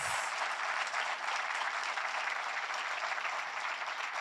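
Audience applauding, a steady dense patter of many hands clapping.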